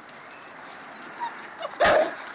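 A pit bull puppy gives one short, loud bark near the end, after a faint whimper a little earlier.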